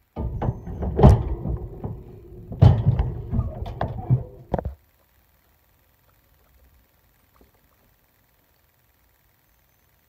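Handling noise from a phone camera being moved, with bumps and rubbing against the microphone and several sharp knocks, cutting off suddenly just before five seconds in; faint room tone after.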